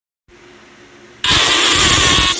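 A cartoon character's shout turned up so loud and distorted that it comes out as a harsh, rasping blast of noise, starting suddenly about a second in after a faint low hum.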